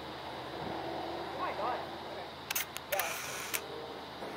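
A quick run of camera shutter clicks a little past halfway, over faint voices and steady outdoor background noise.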